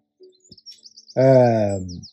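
A small bird chirping in quick, high sweeping notes, faint against the room. About halfway through, a man's voice holds one drawn-out sound that falls in pitch, much louder than the chirps.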